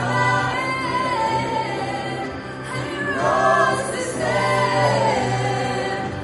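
Mixed vocal ensemble of men and women singing a worship song in harmony, with instrumental backing holding steady low notes.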